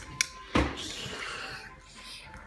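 Two small plastic toy teacups tapped together, a single light click, followed about a third of a second later by a duller, louder knock.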